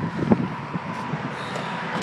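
Van's powered rear liftgate opening after a key-fob press: a few clicks in the first half-second, then steady, even noise as the gate rises.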